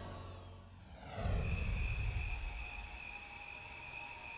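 Title music fades out in the first second. Then crickets set in with a steady high trill over a low ambient rumble.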